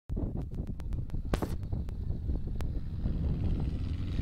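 Wind buffeting the microphone as a heavy, uneven low rumble, with a run of sharp clicks and crackles in the first second and a half.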